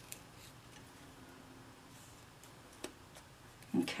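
Quiet handling of card stock and washi tape as the tape is folded around the edge of the panel and pressed down, with a few faint ticks, one a little louder about three seconds in.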